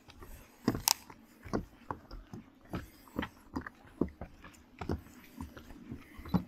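Footsteps on the wooden plank deck of a suspension footbridge: irregular knocks and crunches, about two a second, the loudest about a second in.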